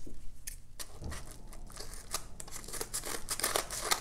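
Scissors cutting open a padded paper mailer envelope: a quick run of sharp snips that goes on steadily.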